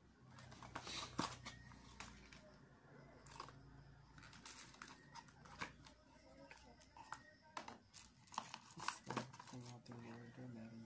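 Plastic packaging being torn open and crinkled by hand, irregular crackles and rustles as a clear phone case is unwrapped.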